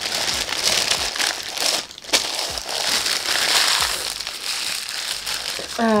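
White tissue-paper gift wrapping crinkling and rustling as it is handled and crumpled, with a brief lull about two seconds in.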